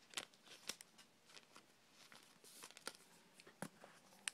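Near silence with a few faint, scattered clicks and light rustles of trading cards and plastic being handled.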